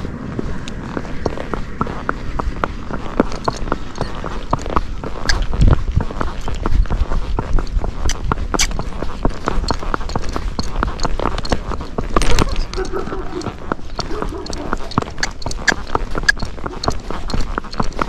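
A Missouri Fox Trotter's hooves beating on a paved road in a quick, steady run of clip-clops as the horse moves out.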